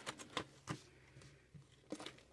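Faint handling sounds: a few light clicks and taps as hands move papers and plastic cash envelopes inside an open zip-around wallet.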